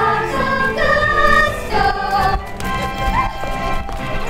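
A group of young voices singing a stage-musical number together over instrumental accompaniment.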